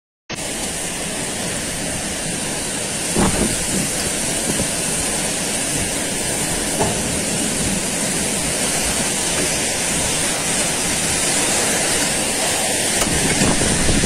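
Violent storm of torrential rain and hail driven by strong wind: a dense, steady rush that grows slightly louder as the squall thickens, with a brief knock about three seconds in.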